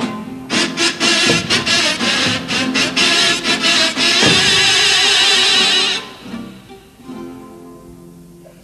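Comparsa instrumental passage: several kazoos buzzing the melody together over Spanish guitars, with sharp drum strokes. The kazoos and drums stop about six seconds in, leaving the guitars playing much more quietly.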